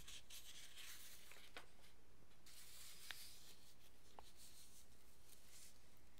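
Quiet room tone with faint rubbing in the first couple of seconds and three tiny, soft clicks spread through the rest.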